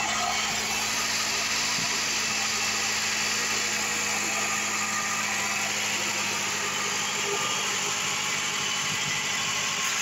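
A 2003 Toyota RAV4's 2.0-litre VVT-i four-cylinder engine idling steadily, heard close up over the open engine bay.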